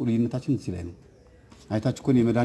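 A man's voice speaking in a lecture, breaking off for a short pause just past halfway before resuming.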